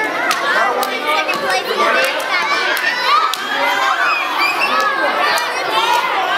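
A group of children shouting and cheering together, many voices overlapping, with a few sharp knocks among them.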